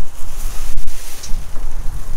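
Wind buffeting the microphone, a loud, fluttering low rumble, mixed with rustling of plastic bubble wrap as gloved hands move through the dumpster's contents.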